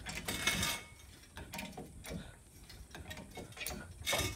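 Hydraulic floor jack being pumped by its handle: a series of short clicking, creaking strokes from the pump mechanism, the first the loudest.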